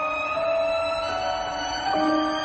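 Tense film score music: several sustained tones held together, each stepping to a new pitch every half second or so, with a swell near the end.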